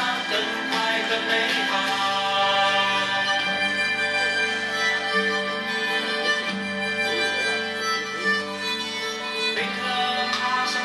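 Music with long held notes at a steady level.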